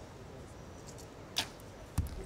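A compound bow shot: one sharp snap of the string on release a little over a second in, then a short smack about half a second later as the arrow strikes the target.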